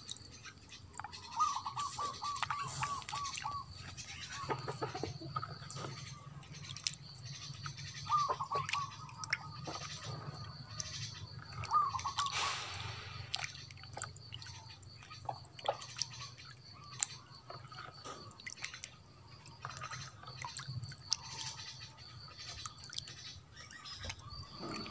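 A hand swishing and stirring water in a plastic basin as red lime paste is dissolved, with small splashes and sloshing throughout. A bird calls in the background with runs of quick repeated notes about two seconds in, again near eight seconds and near twelve seconds.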